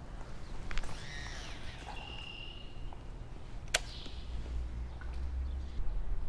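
A cast with a baitcasting rod and reel: a swish, the reel's spool whining as line pays out, then a single sharp click a little past the middle.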